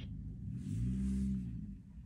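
A low pitched electronic tone from a LeapFrog Think & Go Phonics toy's speaker, rising and then falling in pitch over about a second, with a faint hiss.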